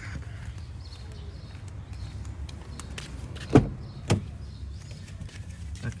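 A car door being unlatched and opened: two sharp clicks about half a second apart, the first and louder about three and a half seconds in, over a steady low rumble.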